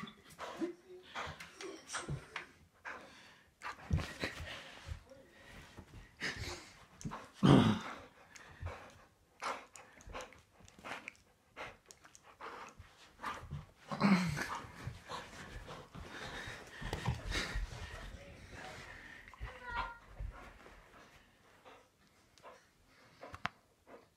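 A dog playing tug-of-war with a rope toy, making vocal noises in irregular short bursts. The two loudest come about seven and a half and fourteen seconds in.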